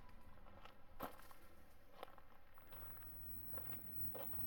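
Near silence: a faint low hum with a few soft clicks, the clearest about a second in.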